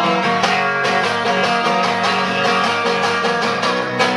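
Live acoustic string band playing a fast picked instrumental opening on banjo, guitar and upright bass, with quick runs of plucked notes at a steady level.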